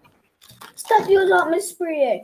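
A person's voice talking briefly after a short pause, starting a little under a second in.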